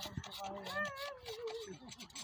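A high, wavering animal cry, its pitch rising and falling, starting about half a second in and lasting a little over a second.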